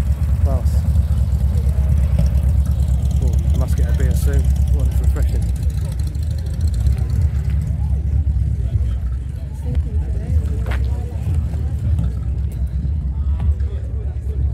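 A car engine running with a low, steady rumble, under the chatter of people talking nearby.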